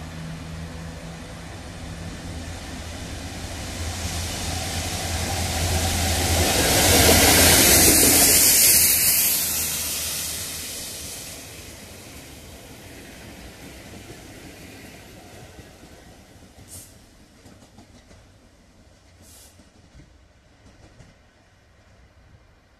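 A Class 66 freight locomotive's two-stroke V12 diesel engine and a rake of rail head treatment tank wagons passing close by: the engine note and rushing wheel noise build to a loud peak about seven to nine seconds in, then fade as the rear locomotive moves away.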